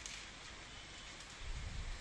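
Faint, steady hiss of background noise, with a soft low rumble just before the end.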